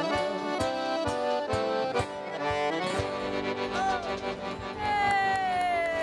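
Accordion-led sertanejo band music with a steady beat, played as an instrumental passage between sung lines. Near the end it holds a long note that slides downward.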